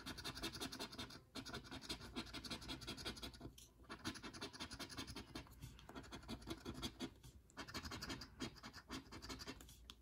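A coin scraping the latex coating off a scratch-off lottery ticket in rapid back-and-forth strokes, stopping briefly a few times between runs.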